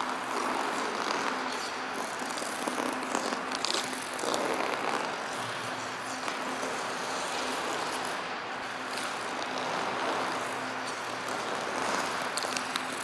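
Ice skate blades gliding and carving edges on rink ice: a continuous hiss with brief sharper scrapes as the skater turns and changes feet, over a faint steady hum.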